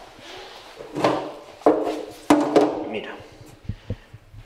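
Indistinct talking, with a sharp click a little over two seconds in.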